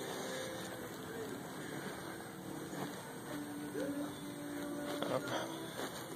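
Quiet room tone of a large store showroom with faint, indistinct voices in the distance; a short spoken "oh" near the end.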